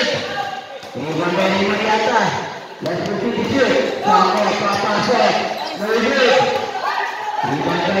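Voices talking and calling out almost continuously, with a basketball bouncing on the hard court floor a few times beneath them, echoing in a large covered hall.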